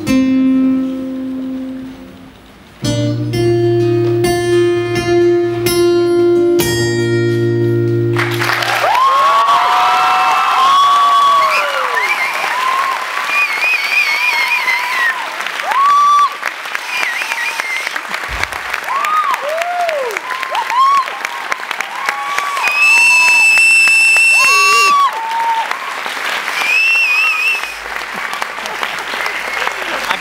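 An acoustic guitar plays its closing chords, the last one strummed and left ringing, then about eight seconds in an audience breaks into applause with cheering and loud whistles that carry on to the end.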